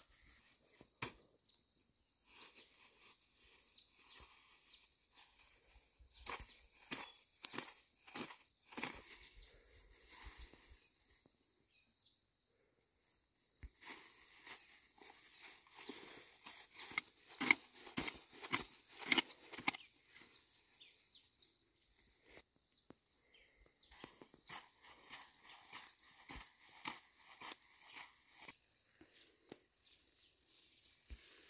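A hand hoe chopping and scraping into dry soil and dead grass, in three runs of quick strokes with short pauses between.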